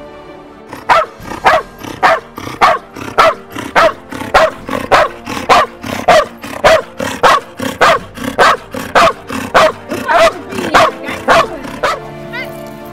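Belgian Malinois barking in a steady, rhythmic run, about two loud barks a second, at a protection helper. Background music plays underneath.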